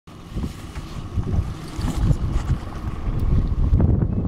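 Wind buffeting the microphone in gusts, a rumbling noise with a few faint clicks and knocks in it.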